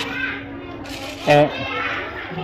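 Speech: a woman's short spoken phrase over a steady background of other people's voices and chatter.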